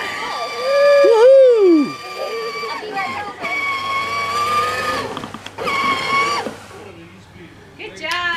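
Power Wheels ride-on toy quad's small electric motor and gearbox whining at a steady pitch as it drives. The whine breaks off briefly about three seconds in, starts again, and stops about six and a half seconds in. A person's short exclamation rises and falls about a second in.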